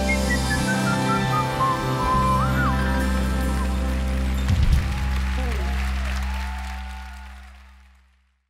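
A live band plays the closing bars of a pop song: a high lead line steps downward and ends on a short trill, over sustained bass and keyboard chords. The final chord is held, and the sound fades out near the end.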